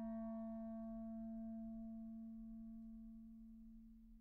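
A clarinet holds one low note in its bottom register and lets it fade slowly away to almost nothing.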